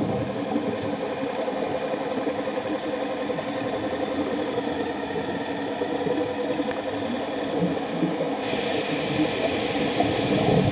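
Small electric ROV thrusters running underwater: a steady whirring hum with several whining tones over a wash of water noise. A higher whine grows louder about eight and a half seconds in.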